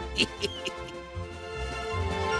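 Soft cartoon background music, with three short high squeaks from a cartoon character's voice in the first second.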